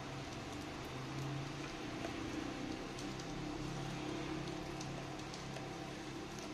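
A thin metal blade slicing into the foil pouch of a Xiaomi Mi lithium-ion polymer phone battery: a faint, steady scratchy crackle with scattered small clicks, over a steady low hum.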